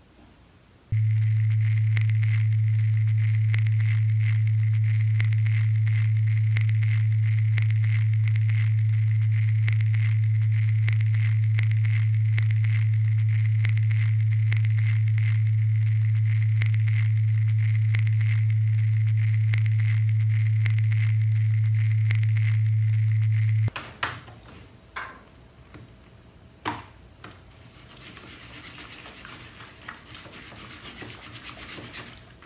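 A steady, loud electronic hum with a fast regular ticking, the sound effect of an edited-in countdown timer. It cuts off suddenly about 24 s in, followed by a few soft clicks and handling sounds.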